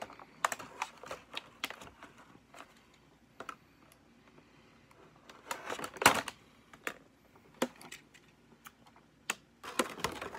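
Stiff clear plastic toy packaging being handled and worked open: irregular clicks, taps and crackles of plastic. The loudest burst comes about six seconds in and another near the end.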